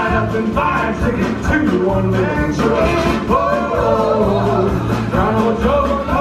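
A live hot-jazz band playing an upbeat number, with upright bass, drums and saxophone carrying a melodic line over a steady beat.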